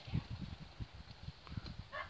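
Faint, irregular low bumps and rubbing from fingers and skin against the phone while cooked rice grains are squeezed between thumb and fingers.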